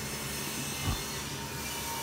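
Steady background hiss with a brief, soft low thump about a second in.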